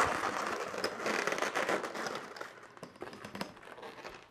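Inflated latex twisting balloons rubbing and creaking against each other and against hands, a run of small crackles and squeaks that fades toward the end.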